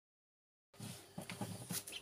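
Ducklings pecking at rice grains, a run of soft taps and small clicks starting about three quarters of a second in, with a short high peep near the end.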